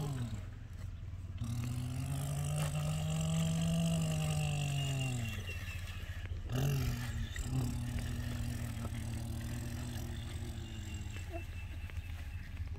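A boy's voice imitating an engine: a hummed drone that rises and then falls in pitch over about four seconds, then after a short break a steadier drone for several seconds more.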